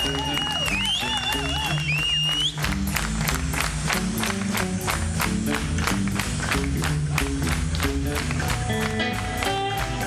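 Amplified blues harmonica played into a hand-cupped microphone, a held note with a fast warble. About two and a half seconds in, the band comes in with a fast, steady drum beat and bass line under it.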